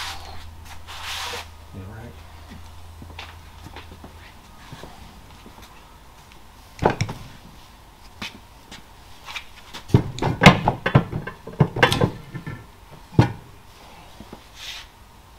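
Hard metal clunks and knocks from engine parts being handled in a disassembled Lycoming O-360 crankcase: one knock about seven seconds in, a quick run of clanks around ten to twelve seconds, and a last one a second later. A low steady hum is under the first few seconds and stops.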